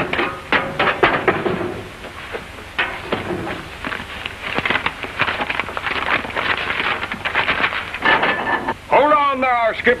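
Clattering, knocking and rustling as rags and paper are pulled out of a clogged wood-burning range, whose blockage is why it won't draw. Near the end a man's voice calls out.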